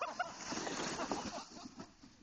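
Plastic sled sliding and scraping over packed snow, a rushing noise that fades out after about a second and a half.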